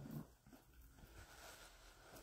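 Near silence, with faint rustling of a cloth towel being rubbed over the face, a little louder just at the start.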